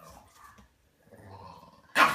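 Two Pekingese dogs growling in short bouts as they play-fight, ending in one loud, sharp bark.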